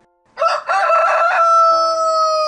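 A rooster crowing loudly: one long cock-a-doodle-doo starting about a third of a second in, wavering at first and then ending on a long, level held note.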